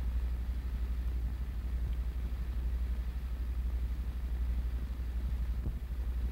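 Steady low hum with a faint hiss: the background noise of an old film soundtrack, with no other sound standing out.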